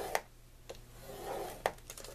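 A scoring stylus scraping along the groove of a scoring board through heavy cardstock, in soft rubbing strokes, with a few light clicks and the sheet sliding on the board.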